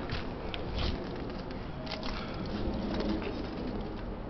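A bird cooing: one low call lasting about a second, just past the middle. Under it runs a steady background hiss with a few light clicks.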